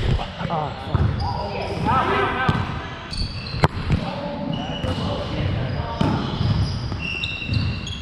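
Volleyball rally in a large, echoing sports hall: sharp smacks of hands striking the ball, the loudest about three and a half seconds in, with brief high squeaks of sneakers on the hardwood court, mostly in the second half, and players calling out.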